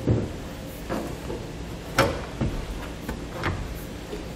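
Several short knocks and clunks as a truck-bed base rail is set onto the bed rail and its mounts drop into the stake pockets. The loudest knock comes about two seconds in.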